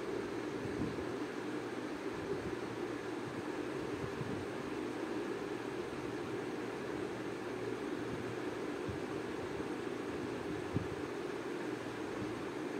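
Chopped green beans frying in oil in a steel pan, a steady sizzle, with a few faint scrapes of a steel spoon stirring them.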